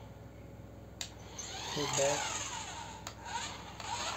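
Small electric drive motor of a toy remote-control racing car whining as it speeds across a hard marble floor. The whine swells and sweeps in pitch from about one second in, peaks around two seconds and fades by three, with a few sharp clicks.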